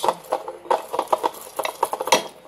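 Whisk beating thick tempura-flour batter in a bowl: a quick, even run of clicks against the bowl, about six strokes a second.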